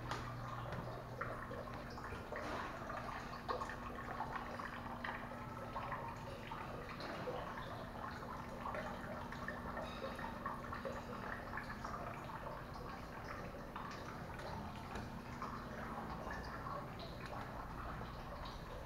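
Water trickling and dripping from a small courtyard wall fountain, a steady patter of many small splashes. A faint low steady hum sits under it and stops near the end.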